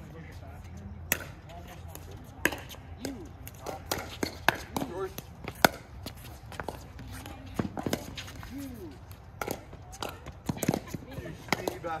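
Pickleball rally: paddles striking a hard plastic pickleball, a quick run of sharp pops at irregular intervals, the loudest about five and a half seconds in. Short vocal exclamations come from the players between hits.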